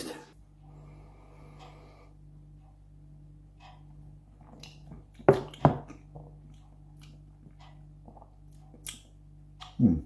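Mouth sounds of a man tasting a non-alcoholic pale ale: small smacks and ticks, then two louder gulps or lip smacks about five and a half seconds in. A steady low electrical hum runs underneath.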